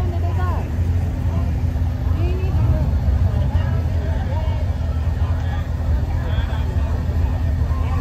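Corvette V8 engines running steadily at low speed as the cars roll past in a slow procession, with faint crowd chatter over them.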